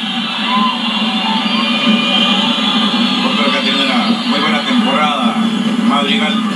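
Television broadcast of a football match heard through the TV's speaker: steady stadium crowd noise with indistinct voices.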